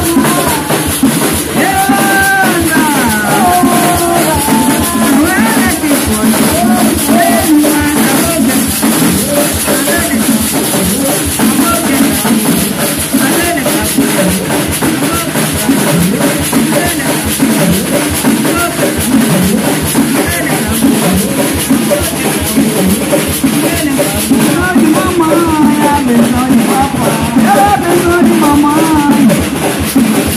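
Live terecô ritual music: drums played in a steady beat with a woman singing through a microphone and PA over them.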